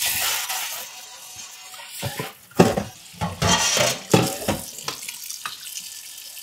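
Kitchen faucet running cold water into a stainless steel pot in the sink, rinsing off the hot pot. The water splashes and changes as the pot is moved, with a sharp knock about two and a half seconds in.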